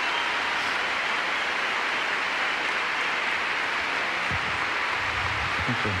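Large arena crowd applauding steadily, a dense even clapping.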